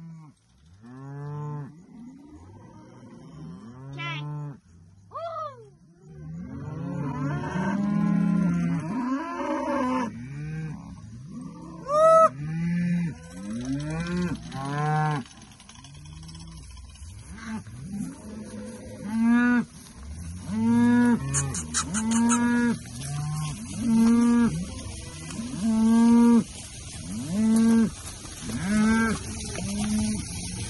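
Herd of beef cows and calves mooing, many calls overlapping, then from about twenty seconds in a steady run of moos about one a second. They are calling in expectation of a move onto fresh grass.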